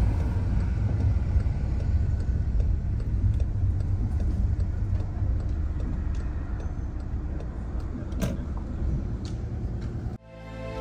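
Car driving at low speed, heard from inside the cabin: a steady low rumble of road and engine noise, with a few faint clicks in the second half.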